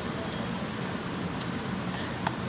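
Steady background noise with no distinct event.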